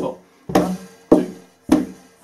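Hand strikes on the top of a wooden cajon, used as a table, with foot beats on the floor, played as a steady four-beat table-drumming pattern. About four sharp, even knocks fall in two seconds, each ringing briefly.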